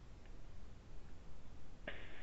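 Low background rumble and hiss from an open microphone, with a sudden burst of noise near the end.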